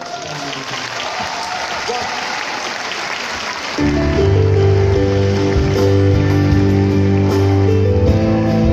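Audience applauding with clapping and cheers after a spoken thank-you. About four seconds in, the live band comes in loud with sustained chords over a heavy bass, starting the next song.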